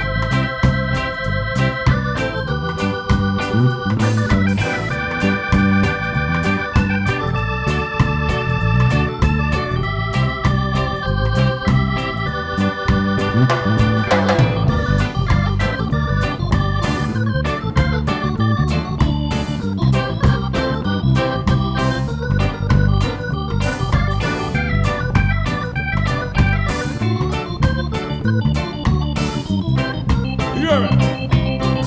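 Live reggae band playing an instrumental groove: electric organ chords held and changing every second or two over bass, electric guitar and drums.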